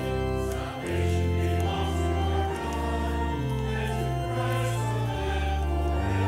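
Congregation singing a hymn together, accompanied by an organ playing sustained chords that change about once a second.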